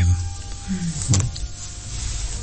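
A short pause in a man's speech, with a brief murmur and a short syllable from him about a second in, over faint steady background tones.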